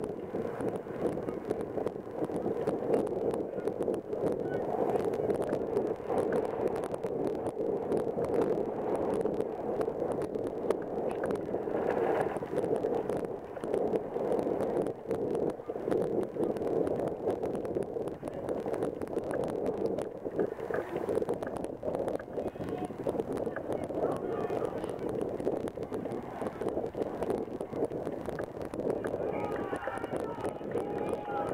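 Indistinct shouting and calling of rugby players and spectators across the pitch, heard as a steady outdoor wash of voices with no clear words.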